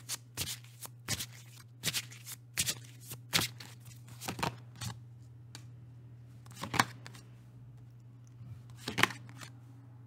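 Tarot cards being shuffled and dealt: a quick run of card snaps and flicks over the first half, then cards set down on the table with two sharper taps, one just past the middle and one near the end. A steady low hum runs beneath.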